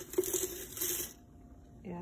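Dried hibiscus tea leaves poured from a small cup into a stainless steel infuser basket: a dry rustling patter with small ticks that stops a little past a second in.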